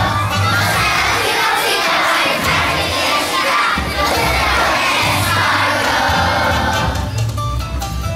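A large group of young children singing together over a recorded backing track with a steady bass beat. Near the end the voices thin out and the backing track comes forward.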